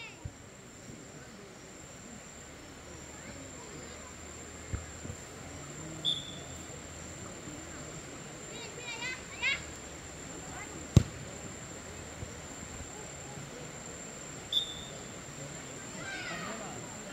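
Outdoor football-pitch ambience: faint distant shouts from players over a steady high-pitched whine. A few sharp knocks cut through, the loudest about eleven seconds in.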